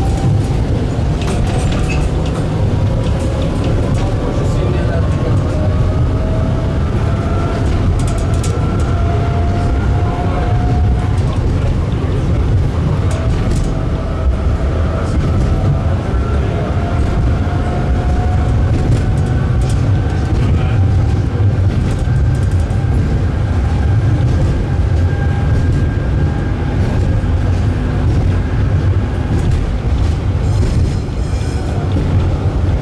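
Tram running along street track, heard from inside the car: a steady low rumble of the wheels on the rails, with a faint whine that slowly climbs in pitch as the tram gathers speed.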